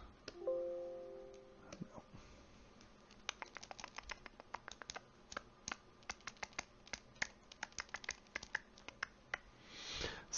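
A short, faint ringing chord of a few tones about half a second in, fading over about a second. Then, from about three seconds in, a long run of quick, irregular clicks from computer input at a desk.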